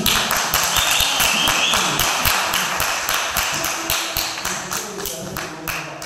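A small audience clapping at the end of a live song, with voices mixed in. The applause thins and fades away over the seconds.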